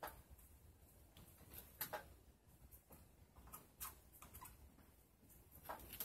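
Felt-tip marker writing on a small acrylic card: faint, scattered short scratches and taps over near silence.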